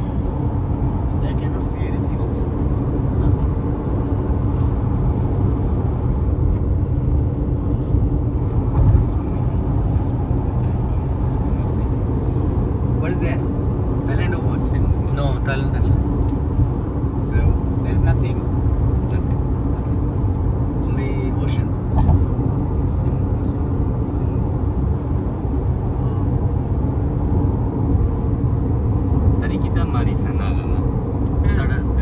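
Steady road and tyre rumble with engine noise, heard from inside a moving car's cabin.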